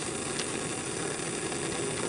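Bunsen burner flame burning with a steady hiss.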